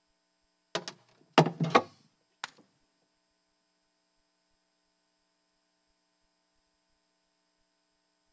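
Faint, steady electrical mains hum through the sound system while the microphone is being sorted out after a low battery. A few short voice-like sounds come in the first two and a half seconds, then only the hum remains.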